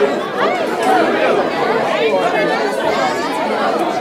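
A crowd of people talking over one another, a steady mix of overlapping voices with no single speaker standing out.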